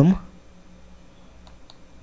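Two faint computer clicks about a second and a half in, against quiet room tone, as the program is launched from the code editor.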